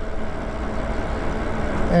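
Wind rushing over the microphone and tyre noise on a wet road from an e-bike being ridden at speed, a steady rumbling hiss with no clear motor tone.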